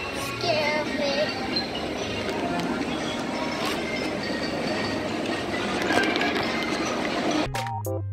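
Music over busy outdoor background noise, with a short bit of voice about half a second in. Near the end it cuts to clean music of separate, clearly pitched notes.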